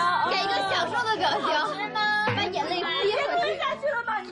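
Several people talking at once, a mix of voices in chatter around a table.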